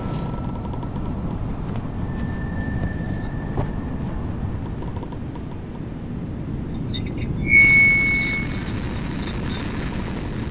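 Steady low rumbling hum. About seven and a half seconds in, a wired neck-collar voice device is switched on and gives a brief, loud, high-pitched electronic tone, after a fainter high tone earlier on.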